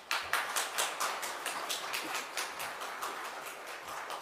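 Audience applauding: the clapping swells quickly at the start, then holds steady as dense, irregular claps.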